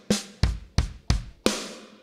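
Addictive Drums 2 Black Velvet virtual drum kit played from a MIDI keyboard: single kick and snare hits, about three a second, each dying away quickly.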